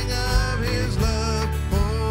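Live worship band playing a hymn: electric guitars, bass, drums and keyboards, with singers' voices carrying the melody.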